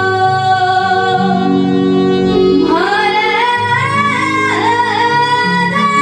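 A woman sings into a microphone over amplified backing music. A long held note gives way, a little before halfway, to a voice sliding up into a higher, ornamented phrase, while the accompaniment's lower notes move in steps underneath.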